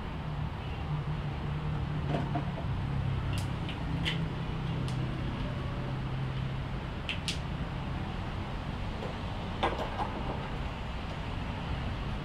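A few light plastic clicks and knocks as the fuel tank cap and filler funnel are handled and the cap is closed, over a steady low hum.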